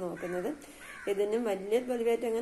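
Only speech: a woman talking, with a short pause about half a second in.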